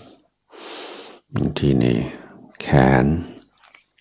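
A soft in-breath close to the microphone about half a second in, then a man's calm voice speaking two short phrases in Thai.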